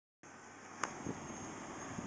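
First-generation Ford Explorer's 4.0-litre V6 idling faintly, with one sharp click a little under a second in.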